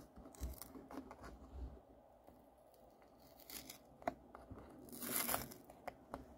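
A small paperboard milk carton being pried and torn open by hand: faint scattered tearing and crinkling of the carton, with a short click about four seconds in and a louder rip a little after five seconds.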